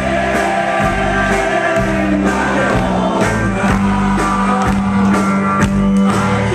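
Live folk-punk band playing, with singing over the band and regular drum beats, heard as an audience recording in a concert hall.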